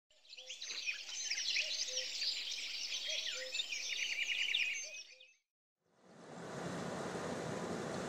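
Many birds chirping and whistling at once in a dense chorus, fading out about five seconds in. After a brief silence, a steady rushing noise starts up.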